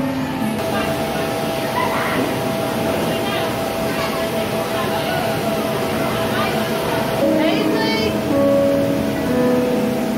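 Background music over the steady din of a busy indoor play area, with children's voices in it. In the last few seconds a series of single held notes sounds, stepping from one pitch to another, from an interactive projected floor piano played by stepping on its keys.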